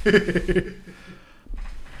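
A man laughing briefly, with a second short burst of laughter near the end.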